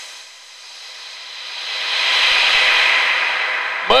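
A hissing noise with no pitch that swells over about two seconds and then eases off slightly.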